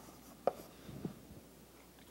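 Chalk on a blackboard: a few faint, short taps and strokes as a small box is drawn, around half a second and one second in.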